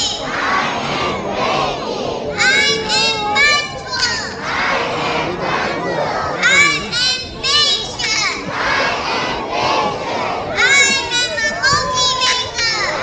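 A large group of young children shouting a chant together, in three bursts of three or four high-pitched shouts about four seconds apart, with the murmur of a big crowd in between.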